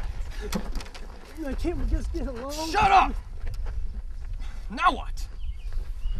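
A man's voice in short, unclear utterances with no words the transcript could catch, over a steady low wind rumble on the microphone.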